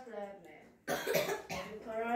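A boy coughs once, sharply, a little under a second in, between spoken words.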